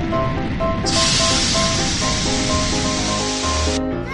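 Water-spray sound effect of a fire hose putting out a fire: a loud, steady hiss that starts about a second in and cuts off suddenly just before the end, over background music.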